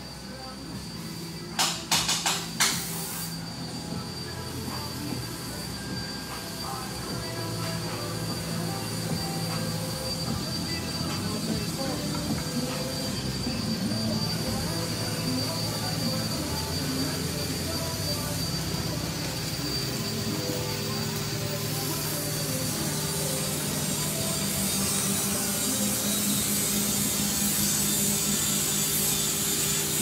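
Steady workshop machinery noise with a persistent high whine, growing gradually louder. A few sharp clicks come about two seconds in.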